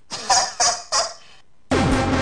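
A voice laughing in three short bursts, then loud music comes in near the end, opening with a falling tone.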